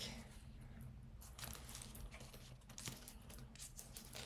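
Faint handling of a small quilted nappa leather zip-around card case: light rustles and scattered small clicks.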